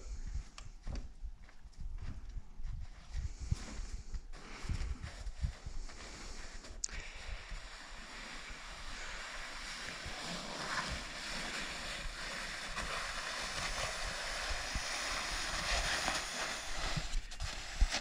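Wind buffeting the microphone in gusts, then a steady hiss that slowly grows louder over the second half.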